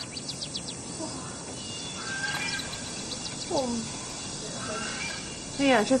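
A person's drawn-out yawn, one breathy voiced sound falling in pitch about three and a half seconds in, over faint high bird chirps.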